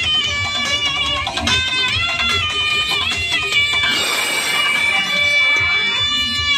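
Loud dance music played through a truck-mounted DJ sound system: a bending lead melody over a heavy bass beat. About four seconds in, the bass drops back briefly under a sweeping noise effect.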